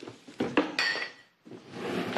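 Glass bottles clinking and knocking together as a bottle is taken from a low kitchen cupboard, a few sharp clinks in the first second, one of them ringing briefly.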